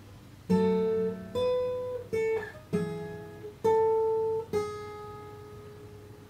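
Taylor acoustic guitar, capo on the second fret, fingerpicked as a single-note lick: about six notes picked one after another, each ringing and fading, with a lower bass note under the first and fourth. A short slide down the neck comes midway.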